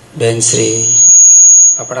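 Public-address microphone feedback: a steady high-pitched whistle comes up under a man's speech about half a second in, turns very loud for about half a second once he stops, and dies away at the end.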